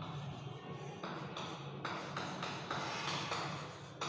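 Chalk strokes on a chalkboard as a structure is drawn: a run of short scratching strokes, over a steady low hum.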